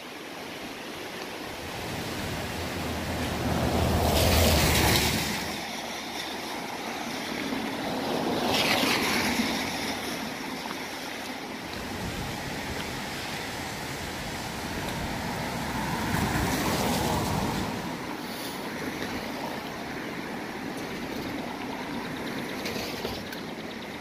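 Steady rush of a river in flash flood, swollen and running high over its banks. The noise swells louder three times, most strongly about four seconds in.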